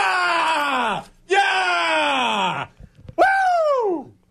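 A man yelling in excitement on air at a goal: three long, drawn-out cries, each sliding down in pitch, with short breaks between them.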